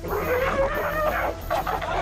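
Sloth bears fighting, with harsh growls and a few short pitched calls.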